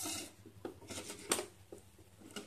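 A veroboard loaded with loose component leads being handled and turned over: a brief scrape at the start, then several light clicks and taps of the board and its wire legs, the sharpest about halfway through.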